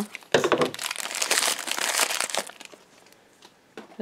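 A black foil blind bag crinkling and rustling as it is cut open with scissors and handled, a dense crackle with small snaps lasting about two seconds before it dies away.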